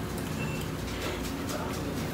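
Restaurant room ambience: a steady low hum with faint background voices and a few small ticks.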